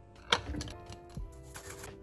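Soft background music, with a sharp tap about a third of a second in and a brief scraping near the end as a fork spreads mashed avocado onto toast.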